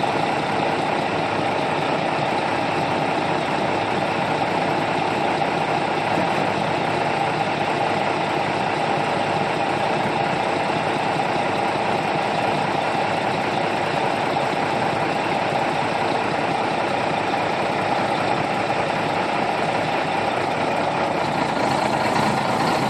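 Heavy diesel truck engine idling steadily at close range.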